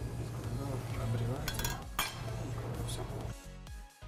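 Kitchen knife cutting dough on a wooden cutting board, with a few sharp knocks and clinks near the middle, over background music with a steady bass.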